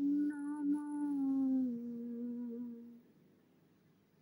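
A woman's voice humming a long, held note that steps down in pitch about halfway through and fades out about three seconds in.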